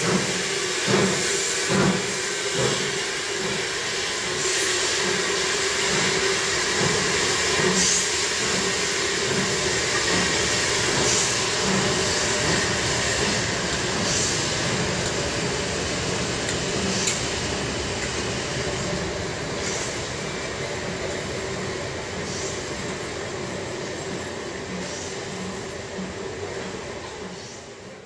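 Steam tank locomotive No. 30587, a Victorian Beattie well tank, chuffing as it pulls a train out through an underground station, its beats about a second apart at first and then quickening, over steam hiss and a steady drone. The sound slowly fades as the train draws away.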